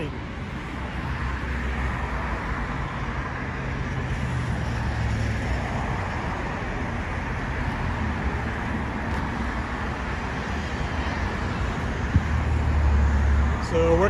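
Steady road traffic noise with a low vehicle engine hum underneath, the hum growing louder for a second or two near the end.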